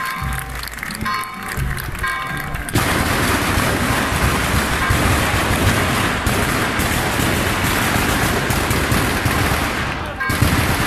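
Music for the first few seconds, then, about three seconds in, a loud barrage of festival firecrackers: countless cracks in such rapid succession that they merge into one continuous crackle.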